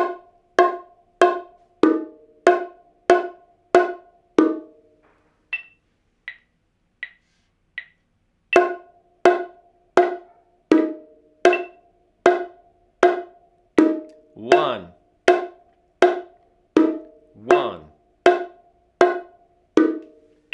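Bongos played with bare hands: the dominant-hand part of the martillo rhythm, even single strokes moving back and forth between the two drums, about three every two seconds. About six seconds in the strokes drop to a few light taps for a couple of seconds, then the steady strokes resume.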